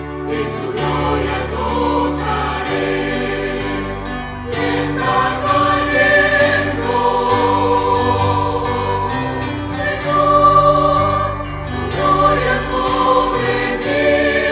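Background music: a choir singing long held chords.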